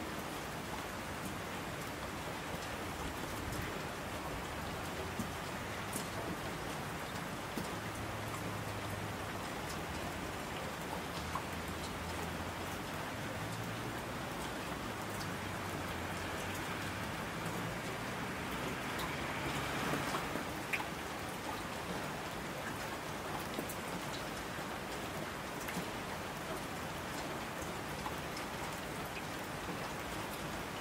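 Steady rain: an even hiss with fine scattered drop ticks, swelling slightly about two-thirds of the way through.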